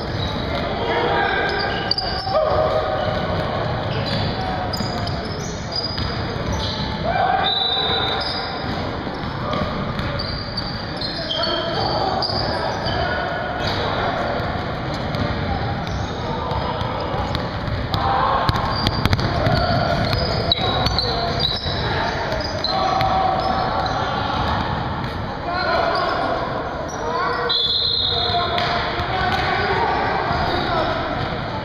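Basketball game play in a reverberant gym: the ball bouncing on the hardwood court, sneakers squeaking in short high squeals, and players' voices calling out.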